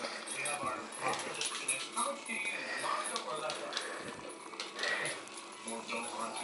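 A dog whining and yipping excitedly while begging for a treat, with its claws clicking and scrabbling on the vinyl kitchen floor as it dances about.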